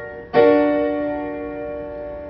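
Alesis QS8.2 digital keyboard on a piano voice striking a D augmented chord (D, F sharp, A sharp) once, about a third of a second in, and letting it ring as it slowly fades.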